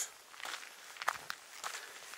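Footsteps of people walking on a dirt and gravel path, about two steps a second.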